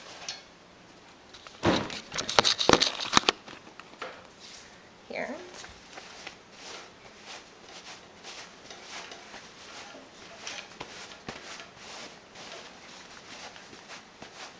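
A damp cotton rag rubbing over faux-suede baby carrier fabric in short strokes, with a louder burst of rustling and clatter about two seconds in. A short voice-like sound comes about five seconds in.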